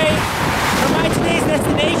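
A steady, loud hiss of heavy rain.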